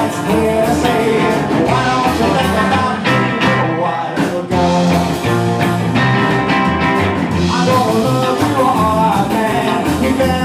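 A live rock and roll band playing: electric guitars, upright double bass and drums, with a steady bass pulse throughout.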